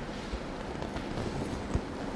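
Steady room noise with two faint, short low thumps, one about a third of a second in and one near the end.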